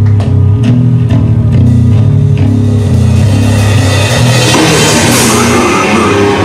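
Live heavy metal band playing: distorted guitar and bass chug a low riff of stepping notes over regular drum hits, and about four and a half seconds in the full kit and cymbals crash in with a denser, louder wash of sound.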